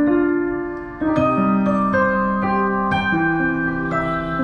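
Roland HP205 digital piano played slowly, with sustained chords and melody notes in a slow, sad-sounding piece. A held chord dies away and a new one is struck about a second in, followed by further notes every half second or so.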